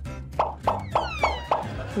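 Comedic TV sound effect: about five quick plopping notes a quarter second apart, with falling whistle-like glides over the middle ones, over a soft background music bed.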